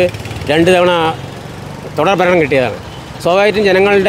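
A man speaking Malayalam in three short phrases, over a steady low engine hum of vehicles.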